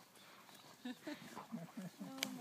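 A goldendoodle and another dog play-wrestling in snow, with a few short growls and whines in the second half.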